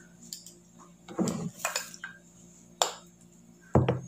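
Handheld metal can opener clicking and clinking against a tin can as it is fitted onto the rim: a handful of separate sharp metal clinks, the loudest near the end.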